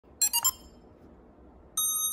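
ZLL SG907 Max camera drone powering on: three quick electronic beeps of different pitch, then a single longer, steady beep starting near the end.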